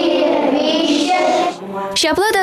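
A group of young children singing together in a classroom, the voices held in long notes and stopping about one and a half seconds in.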